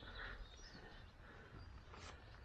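Near silence outdoors, with a few faint bird chirps near the start.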